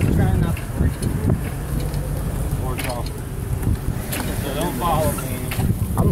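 Wind buffeting a phone's microphone, a steady low rumble, with faint voices talking underneath.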